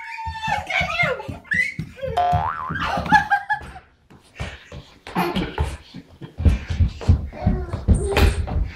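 Young children's high voices squealing and vocalising in gliding pitches, with no clear words. From about four seconds in, repeated light thumps of knees and hands on a hardwood floor as toddlers crawl.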